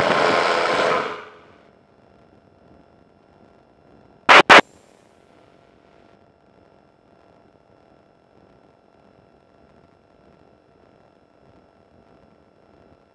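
Intercom feed: noise that cuts off about a second in, leaving near silence with a faint steady tone. Around four seconds in come two short, loud bursts a quarter of a second apart, typical of radio or intercom keying clicks.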